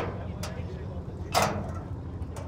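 The hood of a 1949 Willys Jeepster being unlatched and raised: a sharp click, a lighter click half a second later, and a louder metal clunk past the middle, over a low steady hum.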